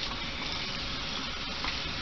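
Steady hissing noise with no distinct events in it.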